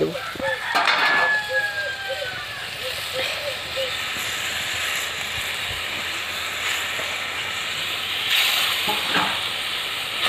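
Curry gravy bubbling and sizzling steadily in a kadai over a wood fire. There are louder bursts of sizzle about a second in and again near the end as pieces of fried tilapia are slid into the hot gravy.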